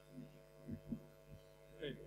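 Steady electrical mains hum in the microphone and sound system, with a few faint, brief low sounds. A voice starts just before the end.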